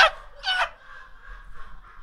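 Men laughing: a short burst of laughter at the start, then a single high, squealing cackle about half a second in, trailing off into quiet, breathy laughter.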